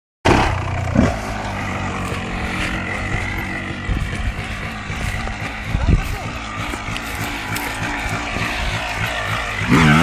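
Honda CR250 single-cylinder two-stroke motocross engine running and revving under throttle as the bike is ridden over sand and dirt, with a sharp rise in pitch near the end.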